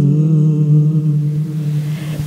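Boys' voices holding one long, steady low sung note at the end of a line of a Malayalam group song, the pitch settling slightly lower right at the start.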